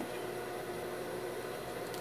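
Steady background hiss with a faint hum: room tone, with no distinct event.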